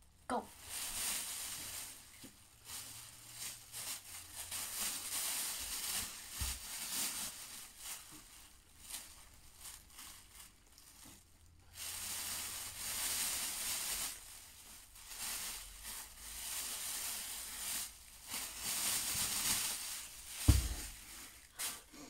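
Black plastic rubbish bag crinkling and rustling as it is handled, in long irregular stretches with short pauses, and a single thump near the end.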